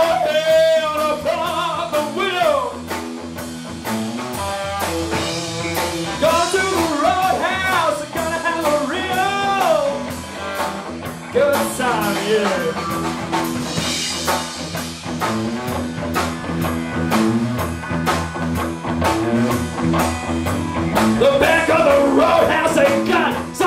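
A live band playing: a male vocalist singing into a handheld microphone, with long wavering held notes, over electric guitar and a drum kit.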